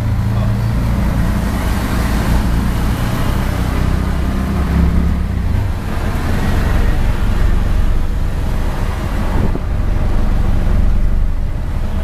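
Tuk-tuk (auto-rickshaw) engine running as it drives, heard from inside its open-sided cabin along with road and wind noise. The engine note shifts about halfway through.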